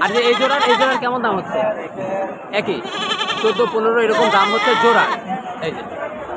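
Young goats bleating: three long, wavering bleats, one at the start, one about two and a half seconds in, and one about four seconds in.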